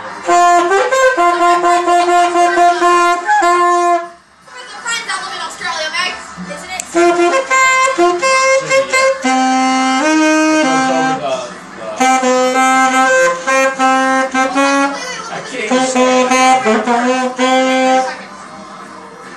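A boy playing an alto saxophone: a simple melody of held notes in short phrases, with brief breaks for breath about four seconds in, around eleven seconds and near fifteen seconds.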